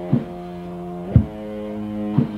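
Lo-fi 1987 death metal cassette demo in a slow passage: distorted electric guitar holding sustained chords, with a drum hit about once a second. The chord changes about a second in.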